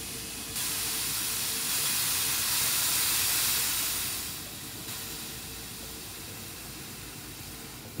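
Water spray hissing from a nozzle as banana bunches are washed. It swells about half a second in and drops to a softer hiss about halfway through, over a faint steady hum.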